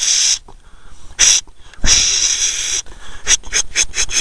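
A person's shushing hisses: a short one, one about a second long, then a quick run of short 'shh's near the end, a handler's calming call to a herding sheepdog.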